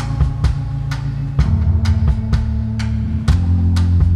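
Live band playing an instrumental passage without vocals: a drum kit keeps a steady beat over low held bass notes, which step to a new pitch about a third of the way in and again near the end.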